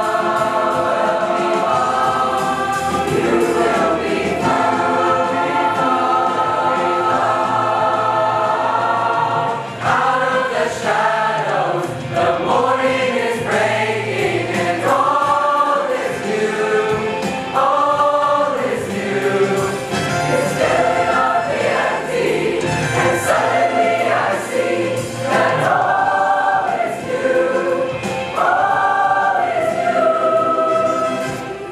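A mixed choir of teenage voices singing: long sustained chords for the first ten seconds or so, then shorter moving phrases that rise and fall in pitch.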